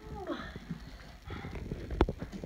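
Soft scuffing and light knocks of a heavy canvas duffel bag shifting on a child's back as he struggles on carpet, with a sharper click near the end.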